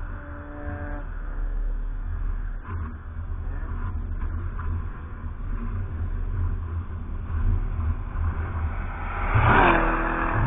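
Car engines at a racetrack: one engine's tone dies away in the first second over a steady low rumble. Near the end a car passes close by, its engine rising to a loud peak and then dropping in pitch as it goes.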